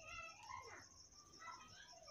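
Faint wavering, voice-like calls in the background, several of them, each sliding down in pitch.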